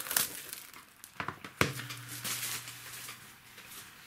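Plastic shrink-wrap foil crinkling and crackling as it is handled and scrunched up after being peeled off a boxed disc case. The crackles are busiest in the first second and a half, then thin out and grow quieter.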